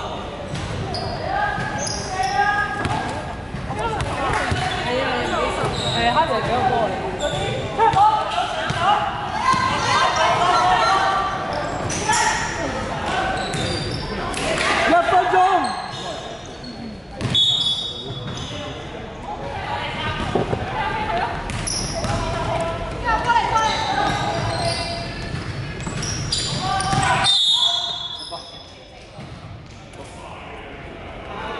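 Basketball game in a large indoor hall: the ball bouncing on the wooden court, and players' voices calling out and echoing through the hall.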